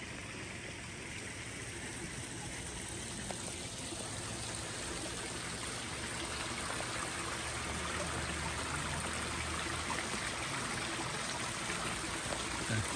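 Water splashing and trickling steadily from spouts into a backyard koi pond, growing gradually louder.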